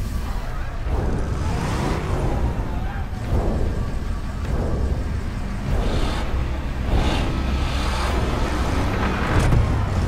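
Edited TV-drama soundtrack of a night road chase: a bus and other vehicles running, over a continuous low drone, with wavering tones in the middle range that come and go about once a second.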